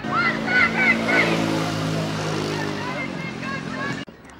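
A team of teenage girls shouting and chanting together in a huddle cheer: high whoops and calls in the first second or so, over a held, sung group chant that carries on to near the end.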